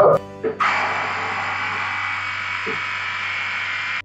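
Xiaomi battery-powered electric inflator's small compressor starting up about half a second in and running steadily with an even buzzing drone as it charges a converted fire extinguisher booster tank toward 100 psi.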